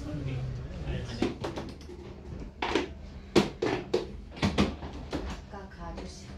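Indistinct voices in a small room, with a run of sharp knocks and clicks in the second half.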